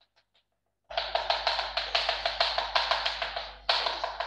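Chalk tapped rapidly against a blackboard, dotting in a shaded area: a fast, even run of sharp taps, about six or seven a second. It starts about a second in and breaks off briefly near the end.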